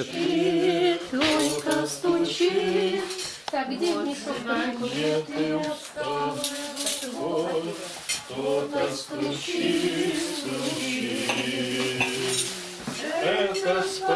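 Dishes and cutlery clattering as plates are cleared from a table, over a small group singing a slow hymn with long held notes.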